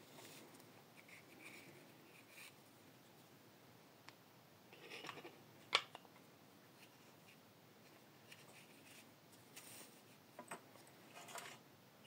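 Faint rustling and handling of a small black drawstring pouch as a jaw harp is taken out of it, with scattered small clicks and one sharp click about halfway through.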